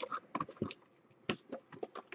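Light, scattered clicks and taps from cardboard trading-card packs being handled in the hands, about half a dozen small sounds over two seconds.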